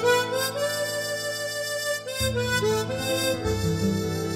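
Harmonica playing a slow, gliding melody over a backing track of bass and chords.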